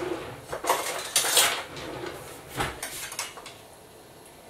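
Metal cutlery and kitchen utensils clattering in an open kitchen drawer as it is rummaged through, in several short clinks and rattles, the loudest about a second and a half in.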